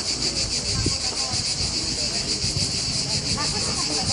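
Cicadas shrilling steadily, a loud high-pitched drone that throbs rapidly, with faint voices of people talking beneath it.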